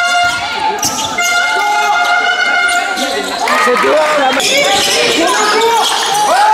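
Basketball game sound in a gym: the ball bouncing on the court, sneakers squeaking and voices echoing in the hall. A steady held tone runs through the first half, then short squeaks pile up in the second half.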